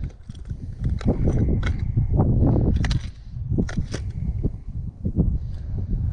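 Hand rummaging through a plastic tackle box of lures: hard baits clicking and rattling against the box's compartments in a string of short, irregular clicks, over a steady low rumble.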